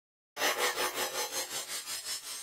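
Logo-intro sound effect: a rasping noise that starts suddenly and pulses evenly about five or six times a second, then begins to fade.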